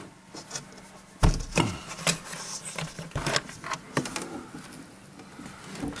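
Scattered knocks and clicks from the camera being handled and moved about indoors, the loudest about a second in, over a faint steady hum.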